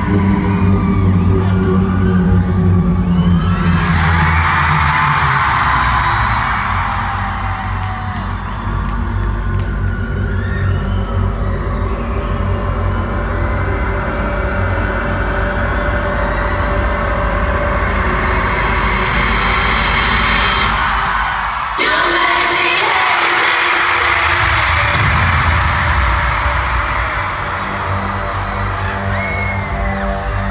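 Live arena concert opening: loud, bass-heavy intro music over the PA, with the audience screaming and cheering in swells. The crowd swells about four seconds in, and again when the music changes abruptly about 22 seconds in.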